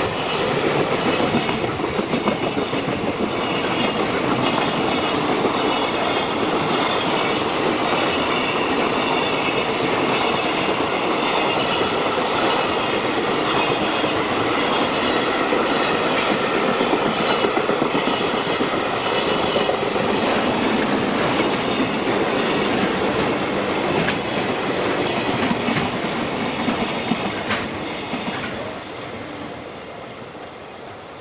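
Container flatcars of a freight train rolling past, a steady loud rumble and clatter of steel wheels on the rails. The sound fades over the last few seconds as the last wagons move away.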